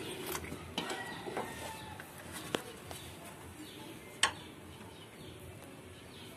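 Quiet handling sounds at a motorcycle engine's spark plug, with two sharp metallic clicks, about two and a half and four seconds in.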